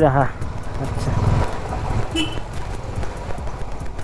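A vehicle running: a steady low noise of engine and road.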